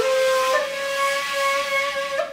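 Plastic Arabic ney, a Kiz in B, playing a slow Segah taksim: one long held note, breathy, with air hiss over the tone.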